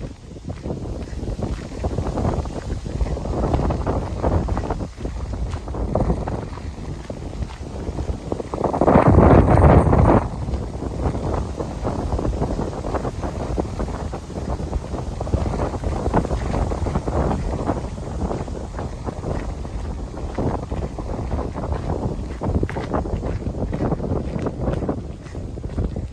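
Wind buffeting the phone's microphone during a walk, a steady low rumble with a strong gust about nine seconds in. Footsteps crunch on a gravel road underneath.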